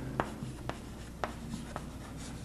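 Chalk writing on a chalkboard: quiet strokes with several sharp taps and clicks as the chalk strikes the board, about one every half second.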